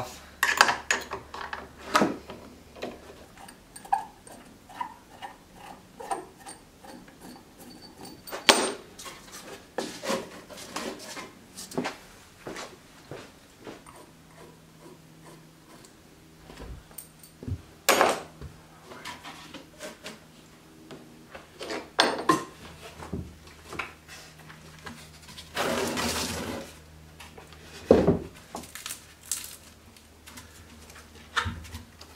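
Wooden knocks and clatter from an old log swing being handled and taken apart on a wooden workbench. Small clicks and knocks throughout, a few sharper knocks spread through, and a brief scraping sound near the end.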